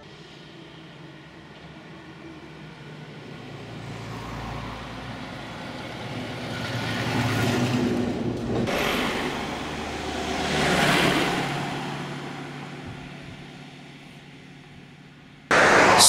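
Road traffic: vehicles passing one after another, the noise swelling and fading twice, loudest a little before halfway and again about two-thirds through.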